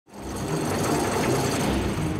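Steady mechanical clatter and whirr of a chain-and-gear drive, fading in from silence at the very start.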